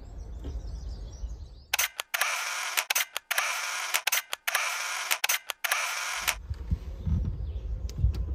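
A series of camera shutter clicks, an edited-in sound effect, running for about four and a half seconds starting near two seconds in, after a low rumble of handling noise.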